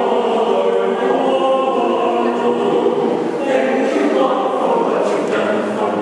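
Mixed choir of men's and women's voices singing in harmony, holding long chords, with a few sung consonants cutting through about halfway and near the end.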